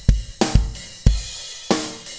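Rock drum kit mix playing back with EQ and bus compression on the drums: kick and snare hits under cymbal wash, with a kick about every half second.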